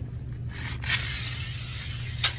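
Die-cast toy Mustang rolling fast across a hard store floor after being let go about half a second in: a steady rushing scrape of its small wheels.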